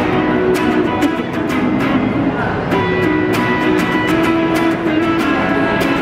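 Sunburst Les Paul-style electric guitar played through a small belt-worn amplifier: quick picked and strummed chords, several notes a second.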